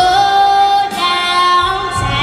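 A young girl singing solo with a big voice, holding a long note with vibrato, a brief break just under a second in, then a second held note.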